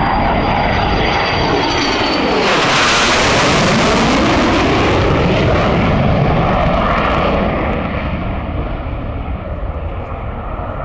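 Hellenic Air Force F-4E Phantom II's twin J79 turbojets during a low flypast. The jet noise builds to its loudest about two and a half seconds in, with a sweeping, phasing hiss as the aircraft passes overhead. It eases off again about seven and a half seconds in.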